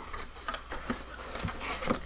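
Hands handling a cardboard card box and trading cards: scattered light taps and rustles, with a sharper tap near the end.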